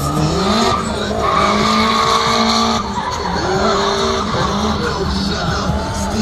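A drift car running the cone course: the engine revs climb in the first second, then stay high with brief dips as the throttle is worked, over the sustained hiss of the rear tyres sliding and squealing.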